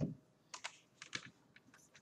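A few faint, irregular computer keyboard keystrokes, about six or seven separate clicks with short gaps between them.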